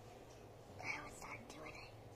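A young girl whispering a few soft words near the middle.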